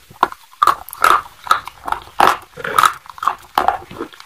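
Close-miked crunching as a person bites into and chews hard, dry white sticks, with crisp crunches coming about two or three times a second.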